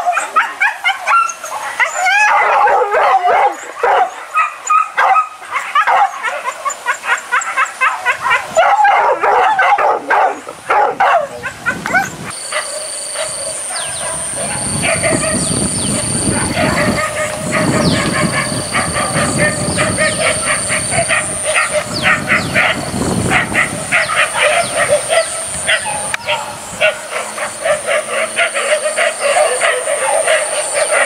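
Several hunting dogs yelping and baying in rapid, overlapping cries. From about twelve seconds in, a steady high-pitched whine comes and goes in segments under the barking.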